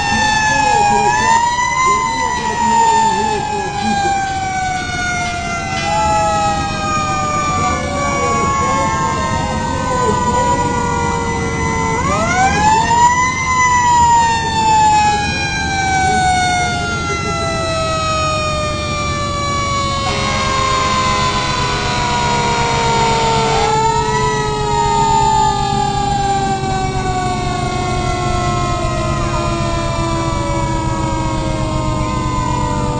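Fire-truck sirens, several overlapping. Each is wound up again and again in quick rises and falls away slowly in long downward glides, over the low rumble of the trucks' engines.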